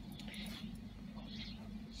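Electric motor of a home-made Leslie-style rotating speaker, salvaged from a transistor organ, turning the drum at a slow speed set by a thyristor controller: a steady low hum with a couple of faint hissy sounds.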